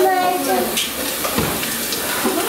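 Cooking pots being handled on a gas stove: a single knock of metal cookware about one and a half seconds in, over a steady hiss, with a brief voice at the start.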